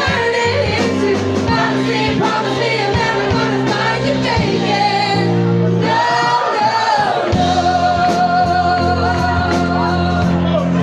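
Live music with singing: voices sing over piano and drums, with a steady beat throughout.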